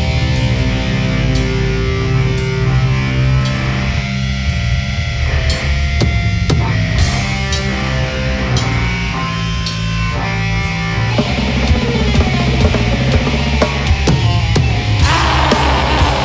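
Metal band playing live: electric guitars holding chords over bass and drums, turning denser and brighter near the end.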